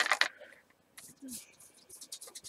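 A short, loud voice-like sound right at the start, then a bristle paintbrush scrubbing paint onto canvas in short, scratchy strokes.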